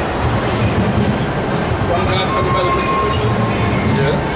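Loud city-street noise, a dense low rumble like traffic, with several voices talking under it. A thin steady whine sounds for about a second from about two seconds in.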